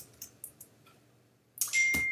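A few faint computer keystrokes, then a short hiss and a steady high-pitched electronic beep that starts near the end and holds as one unbroken tone.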